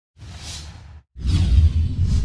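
Whoosh sound effects from an animated logo intro: a quieter swoosh, then a short break and a louder one over a deep rumble.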